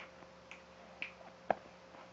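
Three faint, short clicks about half a second apart, the last the sharpest, over a faint steady hum.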